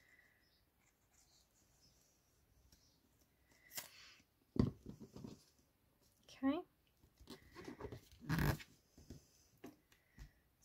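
Quiet handling of paper and a squeezy bottle of Beacon glue: after a near-silent start come a few soft knocks and rustles as the glue bottle is put down on the cutting mat and the paper is pressed flat. A short rising squeak comes about six and a half seconds in.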